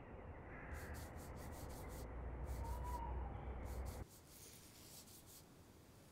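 Faint outdoor ambience with a steady low rumble, which cuts off about four seconds in to a quieter room where a drawing tool rubs and scratches on paper.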